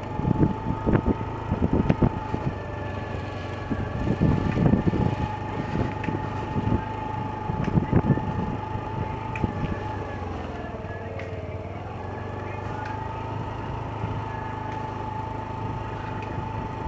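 Engine of a moving vehicle running at a steady pitch that drops briefly about two-thirds of the way through and then picks up again, with wind buffeting the microphone in the first half.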